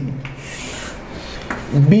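Chalk scraping along a blackboard as lines are drawn, for about a second and a half before the voice returns.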